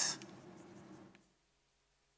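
Pen or chalk writing on a board for about a second, faint, right after the speaker's last word.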